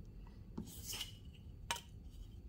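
Light metallic handling: a steel ruler scrapes with a faint ring, then gives a single sharp click as it is set against a ferrite ring carrying small magnets.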